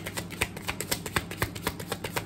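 A deck of tarot cards being shuffled in the hands, a quick even run of card clicks at about seven a second.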